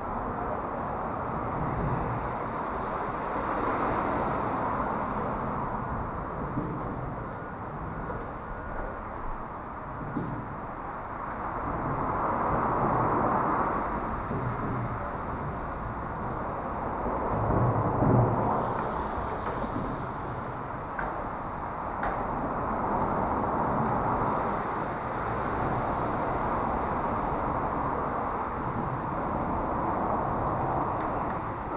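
Road traffic on the bridge overhead: a continuous rumble that swells and fades as vehicles pass, loudest about 18 seconds in.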